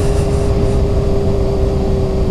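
Honda CBR 600 RR inline-four engine running at steady revs while riding along, with wind rumble on the microphone.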